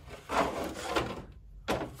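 Wooden scraper dragged across a canvas through wet paint, a rough scraping rub lasting about a second as the paint is pushed to the edge. A sharp knock follows near the end.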